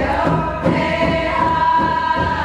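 A group of voices singing together over a steady drumbeat of about three beats every two seconds, holding one long note from about the middle.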